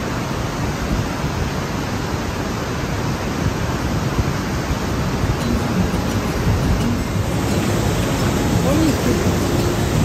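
Steady, loud rushing of a turquoise mountain river tumbling through a narrow rock gorge below the walkway.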